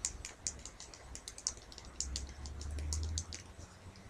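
Mobile phone keypad being thumbed while texting: a quick, irregular run of small plastic key clicks.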